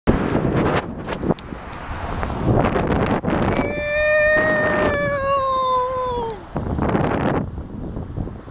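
Wind buffeting the microphone of a camera carried on a moving bicycle, gusting unevenly throughout. In the middle, a single long pitched tone holds for about three seconds and slides down in pitch as it ends.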